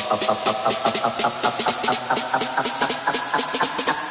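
Electronic techno from a DJ mix in a build-up section: the kick drum is out, leaving a fast, even pulse of short synth hits, about eight a second, with noisy hiss layered over them, all slowly rising in pitch.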